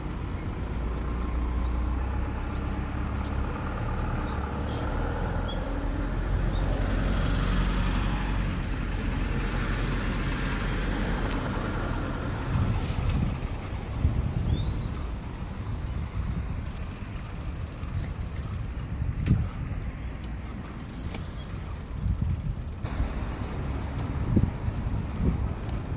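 Street noise heard from a moving bicycle, with a motor vehicle going past that swells to its loudest about a third of the way in and fades. In the second half, scattered knocks and rattles as the bike rides over bumps.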